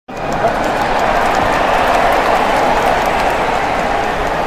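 Crowd applause and cheering, a dense steady roar with many claps, starting abruptly just after the start.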